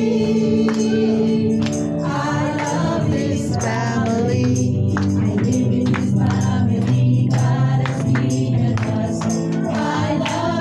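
Church worship team singing a gospel praise song live with instrumental backing and a steady percussion beat, the voices echoing in the hall.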